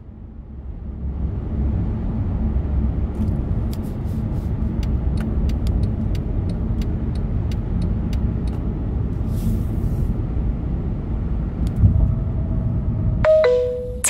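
Steady low road and engine rumble inside a car cruising on an expressway, with a scatter of faint clicks in the middle. Just before the end, a short two-note navigation chime, a higher note then a lower one, signals the next guidance announcement.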